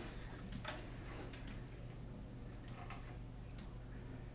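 Light, irregularly spaced clicks and taps, about seven in four seconds, the sharpest near the start, over a steady low electrical hum.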